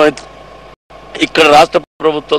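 A man's voice in short phrases, with a steady hum underneath between them. A brief dropout of silence comes just before the middle.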